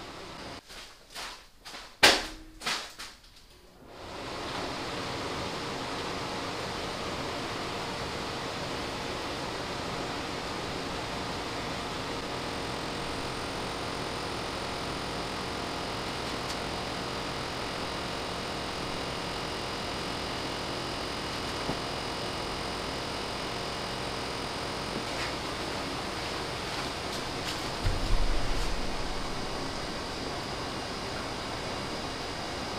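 A few light clicks and knocks, then about four seconds in a steady, even rushing noise begins, like a fan or blower running. A low thump comes near the end.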